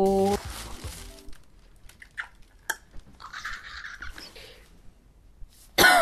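Tissue paper and a cardboard shoe box being handled: soft rustling and a few small clicks, after the tail of a drawn-out 'oh' at the start. Near the end comes a sudden loud, breathy vocal sound.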